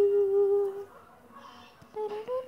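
A girl's voice humming a single steady note for about a second.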